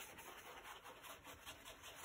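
Faint, scratchy rubbing of a dry stippling brush worked round and round on paper, blending acrylic paint.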